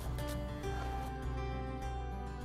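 Instrumental background music, with steady notes that change every half second or so.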